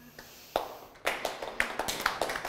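A few people clapping: one clap about half a second in, then scattered hand claps from about a second in.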